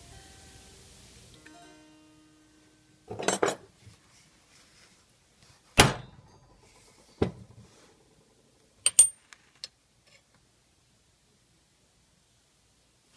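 Touch-mark punch being struck to stamp the maker's mark into a cast pewter spoon handle on a metal plate: one sharp blow just before six seconds in and a lighter one about a second later. Metal clatter about three seconds in and two quick bright clinks near nine seconds as the punch and spoon are handled.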